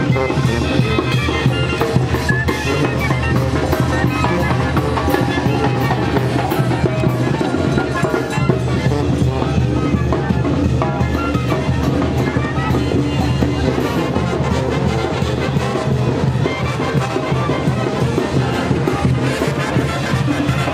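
Brass band with trumpets and drums playing a dance tune with a steady beat.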